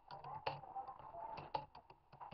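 Computer keyboard typing: a quick, uneven run of faint key clicks as a control's name is typed in.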